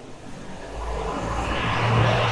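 A city bus drawing up and passing close by, its engine and tyre sound growing steadily louder, with a low rumble and a steady hum building toward the end.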